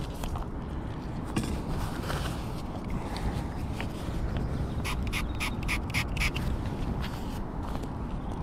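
A duck quacking in a quick run of short calls about five seconds in, over a steady low rumble.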